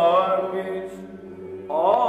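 Byzantine chant in the fourth plagal mode: a solo male chanter sings an ornamented melody over a steady drone (ison) held by two male voices. About a third of the way in, the soloist stops and only the drone is left. Near the end he comes back in with a rising phrase.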